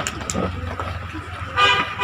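A vehicle horn honking twice in short, quick blasts near the end, over a low steady hum.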